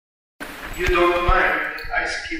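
Brief silence, then a person's voice begins, with a few low thumps under it.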